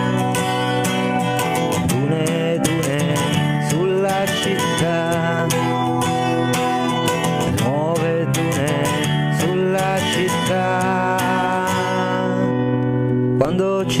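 Instrumental stretch of a guitar song: guitar playing steadily under a sustained melody line that slides up and down between notes. A sung word comes in right at the end.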